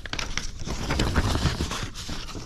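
Sheets of paper rustling as they are leafed through and handled close to the microphone, a dense run of crackles and scrapes.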